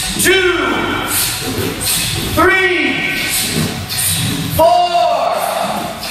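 Shouted count calls for a kicking drill, one about every two seconds, each rising and falling in pitch and echoing in a large hall.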